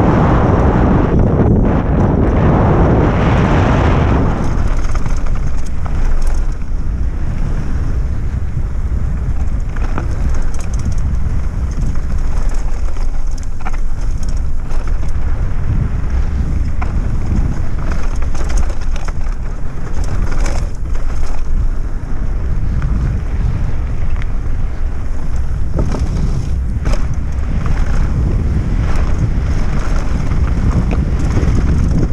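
Wind buffeting a bike-mounted camera's microphone during a mountain bike descent on a dirt trail, with a constant low rumble from the tyres on the ground and scattered knocks and rattles as the bike rides over bumps and stones.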